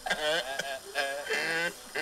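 Synthetic-sounding singing heard through a small radio's speaker: a few held notes with a wavering pitch, broken by short gaps.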